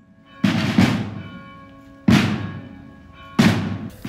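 Black-draped marching drums beating a slow mourning beat: two strokes close together about half a second in, then single strokes roughly every 1.3 s, each ringing out and fading.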